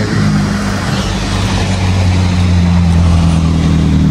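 Engine of a nearby motor vehicle running steadily at idle, a low hum that sags slightly in pitch a couple of seconds in, over a steady rushing hiss.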